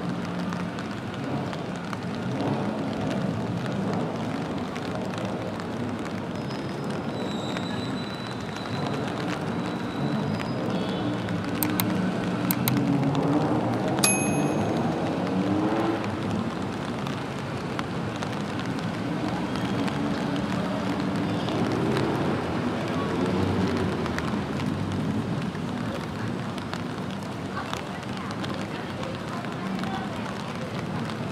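City street ambience in steady rain: a constant hiss and patter of rain, with indistinct voices of passers-by talking. A single sharp click sounds about halfway through.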